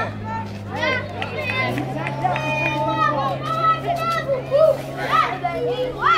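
Children's voices calling and shouting across a ball field, mixed with crowd chatter, over a steady low hum that steps up slightly in pitch about two seconds in.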